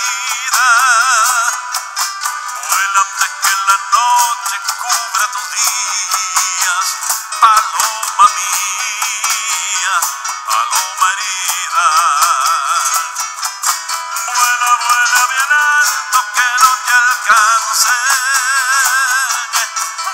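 Live folk band music: an instrumental passage with a wavering, vibrato lead melody over strummed nylon-string guitar. The recording sounds thin, with no bass.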